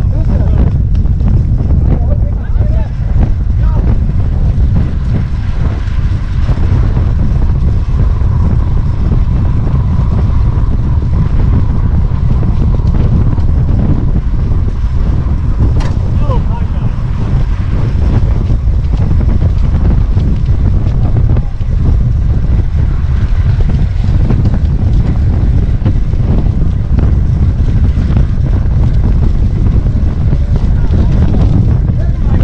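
Wind buffeting the microphone of a rider's camera on a fixed-gear track bike at race speed: a loud, steady low rumble.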